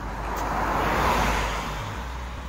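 A car passing by on a road, its tyre and engine noise swelling to a peak about a second in and then fading.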